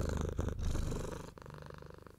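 A low, rapidly pulsing rumble that fades out near the end.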